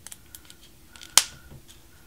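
Small sharp plastic clicks and taps from a smartphone being handled in its glossy protective wrapping, with one loud, sharp click about a second in.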